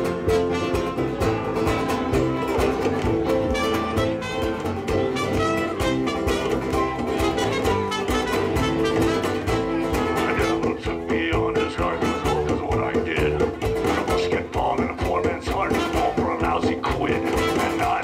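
Live band playing an instrumental break with trumpet, guitar, accordion and keyboard over a steady beat.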